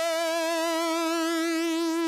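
Nord Stage 3 synth lead patch holding one sustained note with vibrato. The vibrato rate is being turned down from about 6.7 Hz to 5.8 Hz, so the pitch wobble slows across the note.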